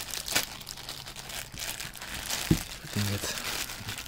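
Clear plastic bag crinkling and rustling as it is pulled and crumpled around a cardboard box, with a single dull thump about two and a half seconds in.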